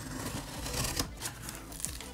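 Folding knife slitting the packing tape on a cardboard box: a scratchy rasp of blade through tape and cardboard, with sharp clicks about a second in and near the end.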